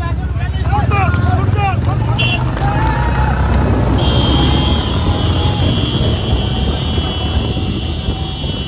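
Motorcycle engine running under load, heard from the bike, with men shouting over it at first. From about four seconds in a steady high-pitched tone sounds over the engine.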